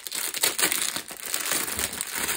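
Plastic packaging crinkling as it is handled, a dense run of quick crackles, most likely the plastic bags of diamond painting drills being pulled out.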